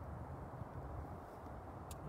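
Steady low background rumble and hiss, with one sharp click near the end.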